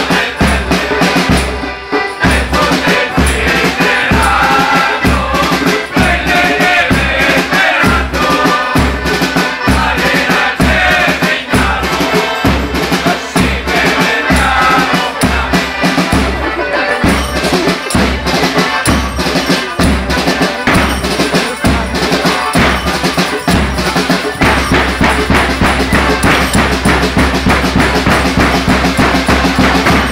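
Live band music with a steady bass-drum beat, about two beats a second, under a melody line. After about 24 seconds the low thuds give way to a held bass.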